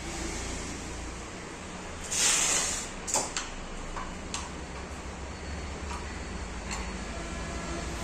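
A metal hex key turning a bolt in a monitor arm's joint to tighten it. A short scraping rush comes about two seconds in, then scattered light metallic clicks and taps as the key is worked and repositioned, over a steady low background hum.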